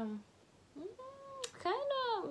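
A woman's wordless, hesitant hum: a short held 'mm' about a second in, then a longer 'hmm' that bends up and falls away near the end, with a single sharp click between them.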